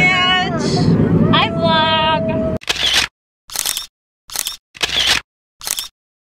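Excited voices over road rumble inside a moving van. About two and a half seconds in, this cuts to five camera-shutter clicks, spaced a little over half a second apart, with dead silence between them.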